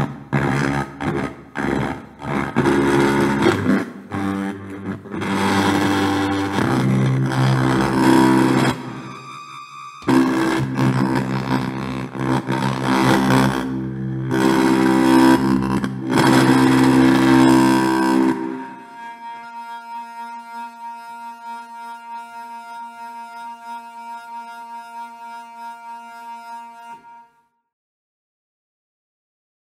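Speaker driver instrument: a keyboard signal drives a speaker driver with its cone removed, and the driver rattles against a hand-held metal strip, picked up by a piezo and amplified into loud, buzzy, distorted notes and chords. About 18 seconds in it drops to a quieter, steadier held chord, which stops a second before the end.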